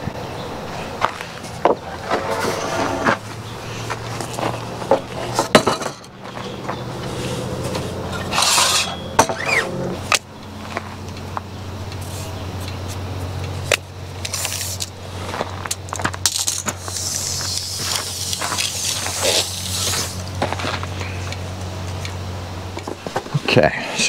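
Knocks and clinks of a wooden board and a tape measure being handled at a miter saw station while measuring lumber. A steady low motor hum runs underneath from about a quarter of the way in until near the end.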